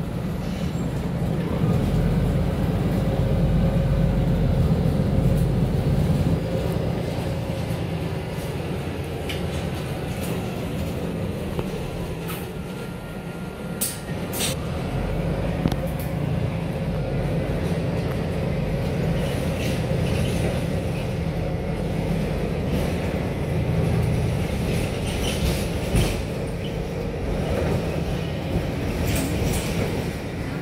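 Cabin noise inside a MAN A22 diesel city bus on the move: a steady low engine and road rumble that swells a few seconds in and eases off near the middle, with a couple of sharp clicks about halfway through.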